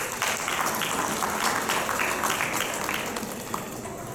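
Audience applauding in a hall. The clapping is dense for most of the time, then thins to a few scattered claps and stops shortly before the end.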